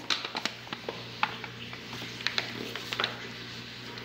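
Wheat flour poured from its plastic packet into a plastic bowl of dough, with scattered light clicks and rustles from the packet and bowl, then a hand beginning to mix it in.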